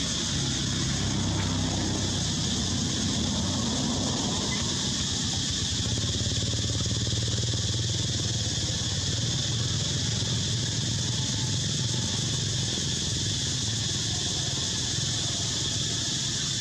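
A motor vehicle's engine running steadily, a low hum that grows a little stronger about six seconds in, over a constant high-pitched hiss.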